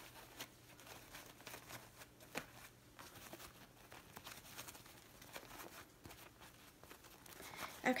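Faint, irregular rustling and crinkling of a wired ribbon bow as its loops are fluffed and shaped by hand.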